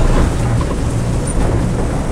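Axopar 37 Cross Cabin's outboard engines running steadily at cruising speed, heard from inside the closed cabin as a low drone, with the noise of the hull running through choppy seas.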